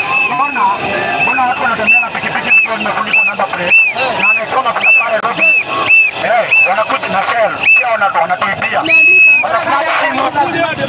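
A whistle blown in short rhythmic toots, about two a second, with one longer blast near the end, over a crowd shouting and chanting.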